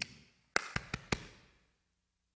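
Four quick, sharp hand claps about half a second to a second in, played as the rhythmic ending of a chanted body-percussion phrase.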